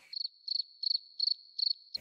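Cricket chirping sound effect over dead silence: about five short, evenly spaced chirps, nearly three a second, the comic 'crickets' cue for an awkward pause.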